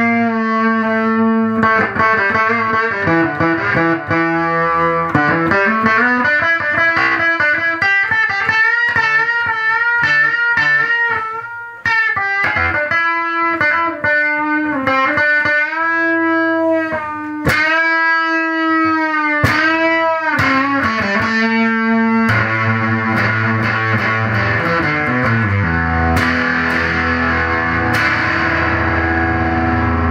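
Gibson SG electric guitar played through a Henretta Engineering pUrPle OCTopus octave fuzz pedal. It plays fuzzy single-note lines with bends and vibrato, then switches to heavier, fuller sustained chords about two-thirds of the way through.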